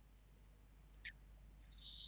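A few faint, sharp clicks, then a short burst of hiss near the end, the loudest sound here.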